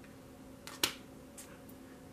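Tarot cards being handled: one sharp card click a little under a second in, with a few lighter clicks around it, over a faint steady hum.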